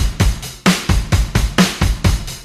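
Background music: a rock track driven by a drum kit playing a steady, fast beat.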